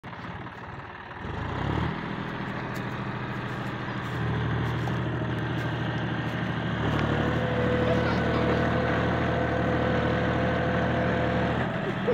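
John Deere 5050D tractor's three-cylinder diesel engine running under load while it drives a rotary tiller through crop stubble. The engine note steps up louder a few times, and a steady thin whine joins about seven seconds in.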